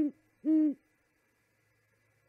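Great horned owl hooting: the end of one deep hoot at the start, then one more hoot about half a second in, closing its hoot series.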